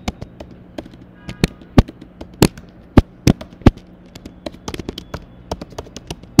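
Typing on a computer keyboard: irregular sharp key clicks, a handful of them much louder than the rest.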